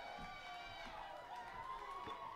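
Live reggae band playing, with a wavering lead melodic line sliding up and down in pitch over the backing.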